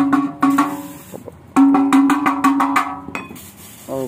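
A muffler's hollow steel inner tube being knocked rapidly, ringing at one pitch with each blow. There are two quick runs of strikes: a short one at the start and a longer one from about one and a half seconds in. This is done to shake the old packing wool loose from the can.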